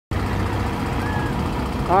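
Volvo city bus engine idling with a steady low rumble. A man's voice starts to speak at the very end.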